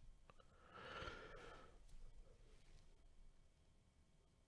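Near silence: room tone, with one faint breathy hiss lasting about a second, starting just under a second in.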